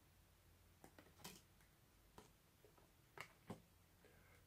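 Near silence with a handful of faint, short clicks from tarot cards being handled and drawn from the deck.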